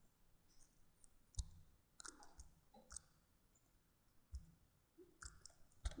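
Faint computer mouse clicks, scattered and irregular, with a quick run of them in the middle.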